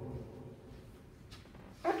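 A man's amplified voice fading into the reverberation of a large hall, then low room tone with a faint tick, and his speech starting again near the end.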